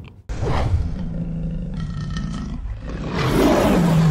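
A lion's roar sound effect, starting just after a short break and swelling to its loudest near the end.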